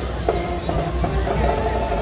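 Marching band playing, with crowd voices around.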